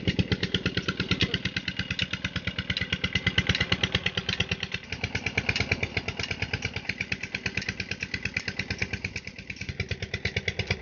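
A slow-running single-cylinder engine keeps an even, steady beat of about seven strokes a second, the kind that drives a farm water pump feeding an irrigation pipe.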